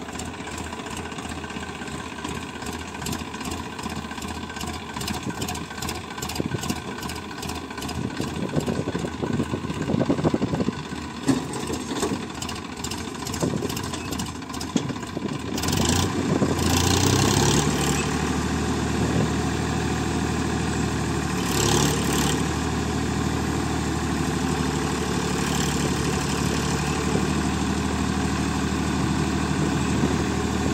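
Diesel engine of a Massey Ferguson tractor carrying a Satnam 650 mini combine harvester, running at low speed with a regular clatter. About halfway through it revs up with a rising pitch and then holds a steady, louder higher speed as the machine climbs onto a raised bank under load.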